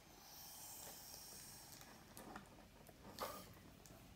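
Faint breath blown through a plastic drinking straw to inflate a balloon: a soft, airy hiss for about two seconds, then two short breaths.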